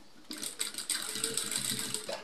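Industrial lockstitch sewing machine running a short burst of stitching, a fast even rattle that starts about a quarter second in, while understitching a neck facing.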